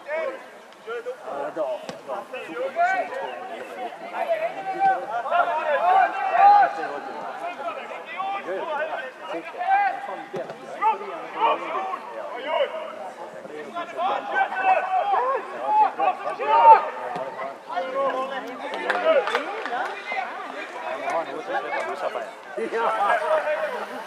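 Voices calling out and talking across an outdoor football pitch, men's voices, ongoing, without clear words, with the loudest call a little after the midpoint.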